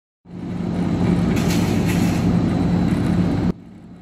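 A steady mechanical rumble with a low hum under it, rising in just after the start and cutting off suddenly near the end.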